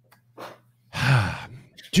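A single breathy sigh about a second in, a short falling exhale with a little voice in it.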